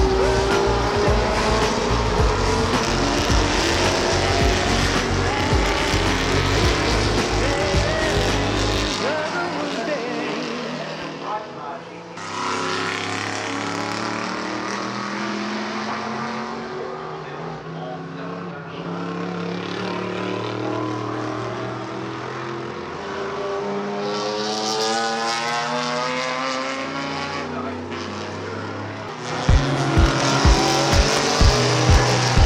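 Historic racing cars' engines revving hard as they pass at speed, pitch climbing again and again as they pull through the gears. A heavy low beat, like a music track, runs under the first third and stops about nine seconds in.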